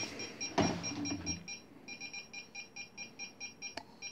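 Small electronic buzzer on a homemade Arduino altimeter circuit beeping rapidly, about five short high beeps a second, pausing briefly partway through.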